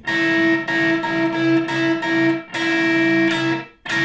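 Electric guitar playing a two-note seventh-chord voicing on the top two strings, struck over and over in a rhythmic figure with two short breaks.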